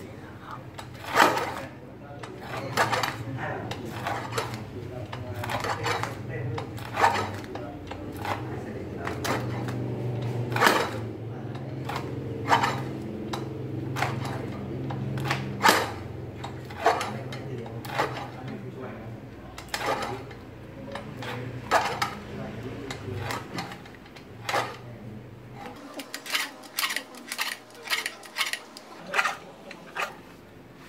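Hand-lever guillotine cutter chopping a dried Phellinus linteus (sang-hwang) mushroom into thin slices. The blade comes down in a steady run of sharp chops, about one every second or two, then faster in the last few seconds.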